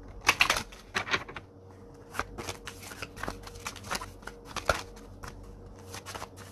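A deck of tarot cards being shuffled by hand, with irregular swishes and taps of the cards. The loudest strokes come just after the start and again about a second in.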